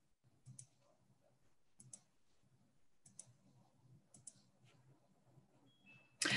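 Near silence, broken by a handful of faint, short clicks spread a second or so apart.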